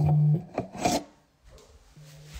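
Rubbing and scraping handling noise from a phone's microphone as the phone is moved about, with a short low steady hum at the start and a louder scrape just under a second in.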